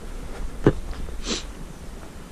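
Quiet outdoor background with a steady low rumble on the microphone. A single sharp click comes under a second in, then a short breathy hiss like a sniff.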